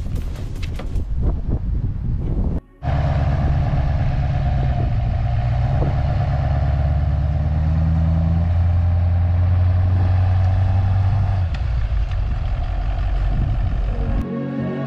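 Steady low hum of an idling diesel pickup engine, the LBZ Duramax 6.6-litre V8, after a few clicks and knocks in the first couple of seconds. Its tone shifts slightly twice in the last part.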